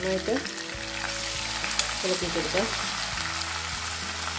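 Oil sizzling steadily as curry leaves and chopped aromatics fry in a nonstick wok, with a spatula stirring them toward the end.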